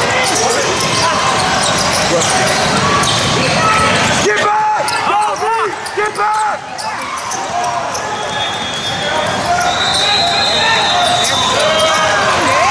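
Basketball game sounds on a hardwood gym court: the ball bouncing and sneakers squeaking, with a cluster of squeaks about four to six and a half seconds in, over the voices of players and spectators.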